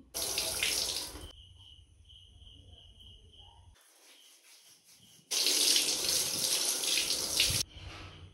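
Shower water running and splashing in two loud stretches: about a second at the start, and about two seconds from just past the middle, with a quiet gap between them.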